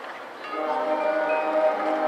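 Marching band music: a soft held passage, then about half a second in the band swells into a louder sustained chord with bell-like ringing from the front-ensemble keyboard percussion.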